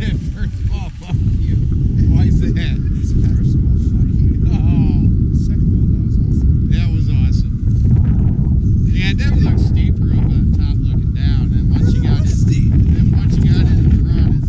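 Steady, loud wind rumble on a GoPro's microphone during a downhill ski run, with skis scraping over the snow.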